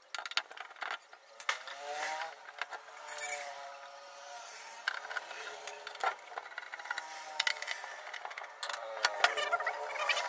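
Handling noises from the case of a hot-air SMD rework station as it is moved and turned over to be opened: scattered clicks, knocks and rattles.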